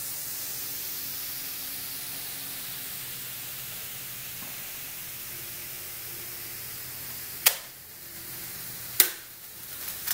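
Steady faint hiss with a low hum while a hot-wire foam cutter's heated wire melts slowly through a foam block under load. Two sharp clicks come near the end, about a second and a half apart.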